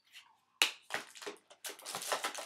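Plastic makeup compacts clattering and clicking against one another as they are rummaged through by hand in a drawer. A sharp knock about half a second in is followed by a quick run of small clicks.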